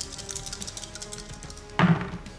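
Background music with a drum beat, with a quick run of faint clicks in the first half. A short voice sound comes near the end.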